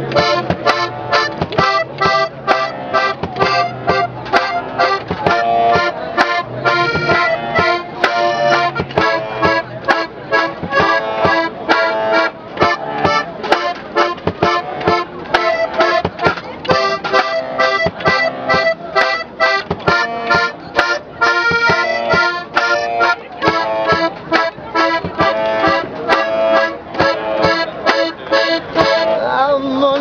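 Piano accordion playing an instrumental tune, with a steady beat from a foot-pedal beater striking a suitcase used as a kick drum.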